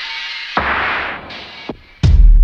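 A rushing noise that swells about half a second in and then fades away.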